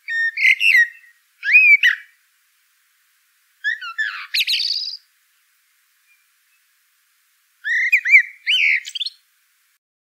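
A songbird singing short phrases of quick, clear whistled notes that slide up and down in pitch: four phrases with pauses between, two in the first couple of seconds, one in the middle, and one near the end.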